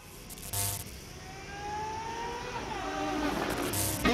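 Opening-title sound effects: a whoosh about half a second in, then a whine that rises slowly, drops away in steps and swells louder, building up into the theme music.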